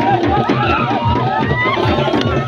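Loud music over a DJ sound system, with a fast, heavy drum beat, mixed with the voices of a crowd shouting and singing along.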